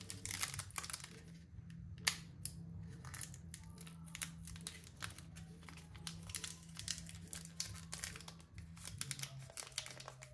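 Foil booster-pack wrappers crinkling and crackling as the packs are handled and torn open, with a sharp crack about two seconds in.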